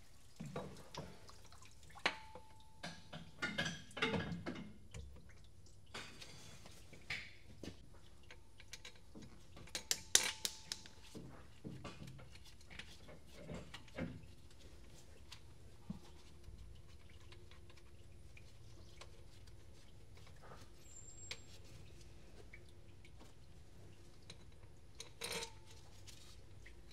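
Scattered light clicks, taps and knocks of a thermostat housing and its bolts being handled and fitted by hand onto a DD13 diesel engine that is not running. The loudest knock comes about ten seconds in, and from about fifteen seconds on there is little more than faint background.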